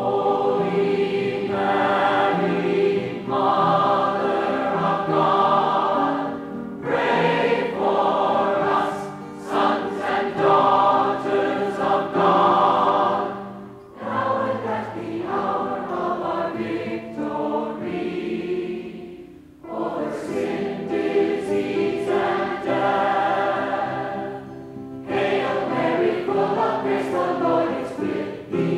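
A group of voices singing a song together, in phrases of about five or six seconds with short breaks between them.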